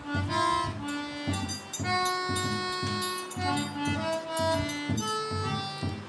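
A small band playing live: a harmonica carries a melody of held, reedy notes over a hand-held drum beating a regular rhythm.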